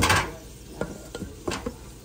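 Silicone spatula working stiff, well-beaten mackerel fish paste in a stainless steel bowl: a loud wet squelch at the start, then a few short soft knocks as the paste is folded and pressed against the bowl.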